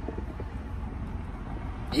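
Steady low rumble of car engine and road noise heard from inside the cabin of a car being driven.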